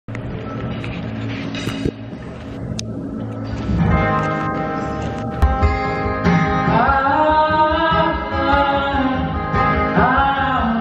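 Acoustic guitar played solo, starting about four seconds in after a quieter stretch of stage and room sound, its chords ringing out as the opening of a song.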